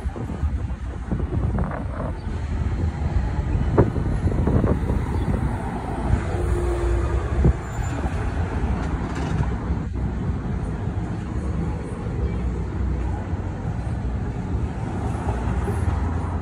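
Outdoor street ambience: a steady low rumble of road traffic, with a couple of brief clicks.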